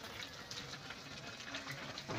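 Mutton pieces frying in a karahi, a low steady sizzle with a few small pops.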